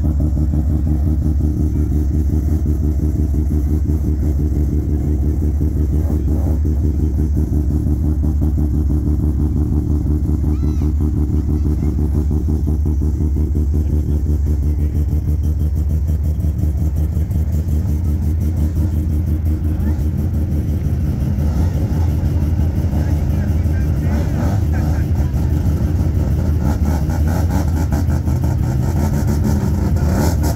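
Mazda RX-7 (third-generation FD) rotary engine idling close by, a loud, steady low drone with no pauses.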